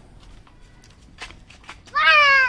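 A few soft taps and clicks of things being handled at an open car boot, over a low background hum; the clearest tap comes a little past halfway. A young child's high voice starts right at the end.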